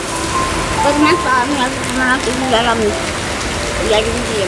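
A steady background hiss, with a person's voice in short phrases of wavering pitch between about one and three seconds in.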